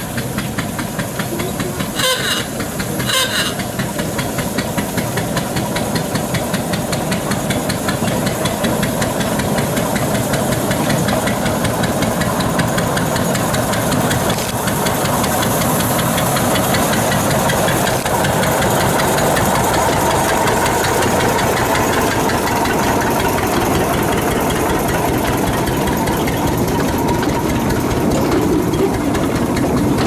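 Small narrow-gauge motor locomotive's engine running with a rapid, even beat, growing louder as it approaches and passes close by hauling wagons. Two short sharp sounds come about two and three seconds in.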